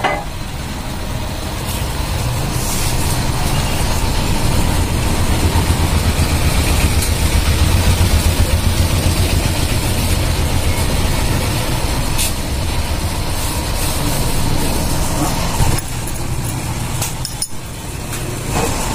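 A steady low engine rumble that swells in the middle and eases off again, with a few light metal clinks.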